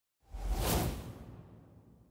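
A whoosh sound effect for an animated logo sting, with a deep rumble under it: it swells in suddenly about a quarter-second in and fades away over the next second and a half.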